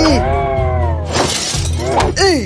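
A cartoon character's strained, wordless vocalizing with a long tongue stretched out, over background music, broken about a second in by a short shattering crash sound effect.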